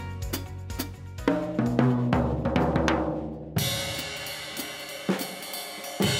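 Acoustic drum kit being played: quick strokes on drums and cymbals, then a little past halfway a cymbal crash that rings on under a few more hits.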